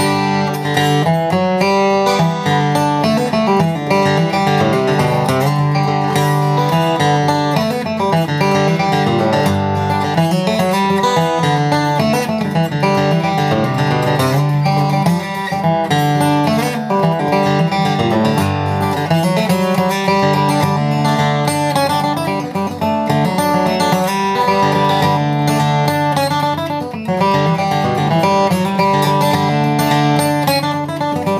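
Steel-string dreadnought acoustic guitar played solo, with strummed chords and picked melody lines, strung with medium-gauge strings.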